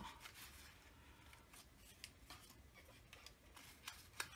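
Near silence with faint rustles and light ticks of thin card die-cut pieces being handled and set down on a desk.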